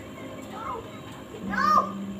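A young child's voice in two short high-pitched calls, the second, about one and a half seconds in, louder, rising and falling in pitch.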